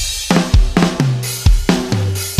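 The song's band intro starts: a drum kit plays sharp hits, several a second, over held bass notes.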